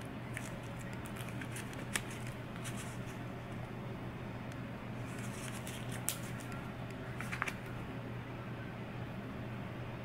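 Faint rustling and a few small clicks of paper wart-bandage packets being handled and shuffled, over a steady low hum.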